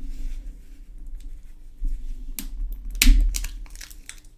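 Two AA batteries handled in cotton-gloved fingers: rustling of the gloves and small clicks of the batteries, with a louder knock about three seconds in.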